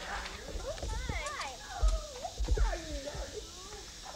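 Several people's voices talking over one another, too jumbled to make out, in lively rising and falling tones. A few low thumps come about two seconds in.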